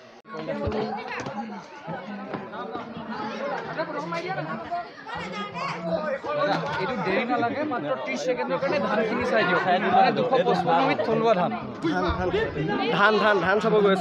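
Several people talking at once: overlapping chatter, louder in the second half.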